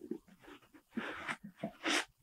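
Crumpled stuffing paper crinkling as it is pulled out of the toe of a new leather sneaker. Faint scattered crackles, then a longer rustle about a second in and a last crinkle near the end.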